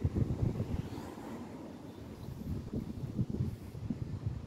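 Wind buffeting the Samsung Galaxy A32 5G's microphone outdoors: an uneven low rumble coming in irregular gusts.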